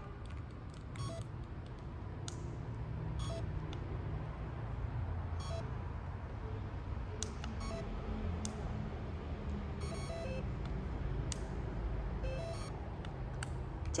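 Steady low rumble of room noise, with faint short beeping tones and scattered brief clicks.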